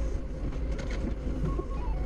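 Doosan 4.5-ton forklift engine running steadily, heard from inside the cab as the forklift drives off with its load. About a second in, a simple background music melody of stepped notes comes in over it.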